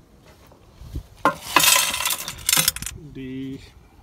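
A bowlful of small scrap jewelry (chains, rings, pendants and charms) clattering and jangling as it is tipped out onto a plastic truck bed liner, for about a second and a half starting just after a second in. Near the end there is a short hum from a man.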